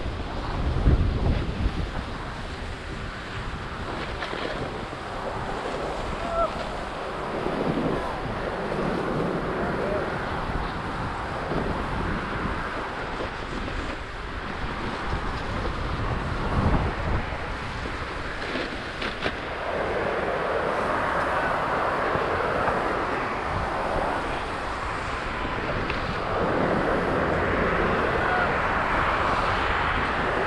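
Wind rushing over an action camera's microphone while sliding down a groomed snow slope, with the steady hiss and scrape of edges over packed snow. The scraping swells in long, louder washes in the last third.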